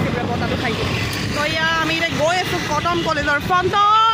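A woman talking over steady road and vehicle noise.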